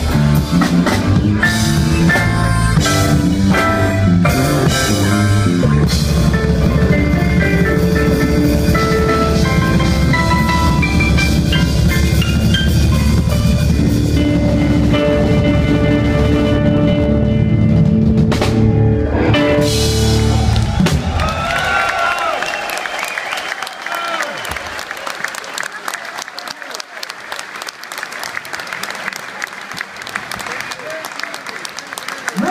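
Live electric blues band: drum kit, bass guitar, keyboard and harmonica playing loudly to the end of a song. The music stops about two-thirds of the way in, and the audience applauds and cheers.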